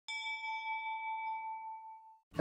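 A single bright chime struck once at the start, its ringing tone slowly fading over about two seconds: a logo-sting sound effect.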